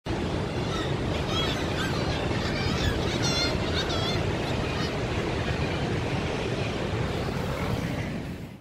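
Sea surf breaking with wind noise, and several short seabird calls in the first half.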